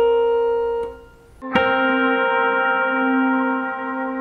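The tail of a C and B-flat minor-seventh interval held on a Yamaha electronic keyboard fades out within the first second. About a second and a half in, an electric guitar plucks the same C–B flat minor 7th as a two-note chord and lets it ring, the lower note wavering slightly.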